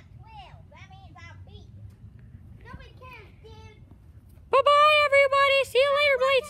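Faint high voices at first, then, about four and a half seconds in, a child speaking loudly in a high, squeaky, drawn-out voice.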